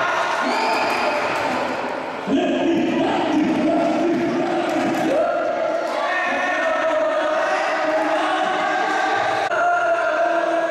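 Singing voices holding long notes, the pitch stepping to a new note every couple of seconds, as in a sung song.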